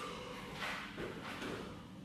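Quiet room tone with a few faint, soft knocks.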